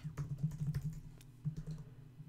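Typing on a computer keyboard: a quick, irregular run of key clicks, including a Command-Tab shortcut.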